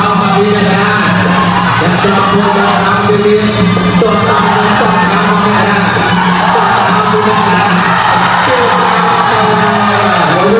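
Traditional Khmer boxing music playing steadily, a wavering reed melody (sralai) over drums, with a crowd cheering and shouting.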